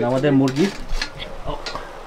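A wooden spatula stirring chicken in an aluminium pressure-cooker pot, scraping and knocking against the metal rim and sides in a few irregular clicks. A person's voice sounds briefly at the start.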